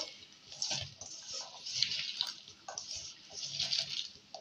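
A hand mixing chopped raw potato, onion and green chili in a stainless steel bowl: a wet, squishy rustling of vegetable pieces that comes and goes irregularly as the hand works them.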